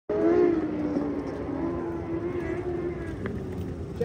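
Midget race car engines running on the dirt track, a steady engine drone whose pitch slides slowly downward.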